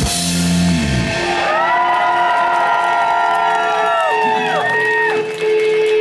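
A rock band's drums and bass stop about a second in, ending the song. The audience then cheers with several long "woo" shouts that fall away after a few seconds, while a single note hangs on.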